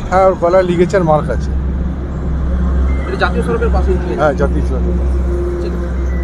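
A man speaking in short phrases, near the start and again around the middle, over a steady low rumble of road traffic.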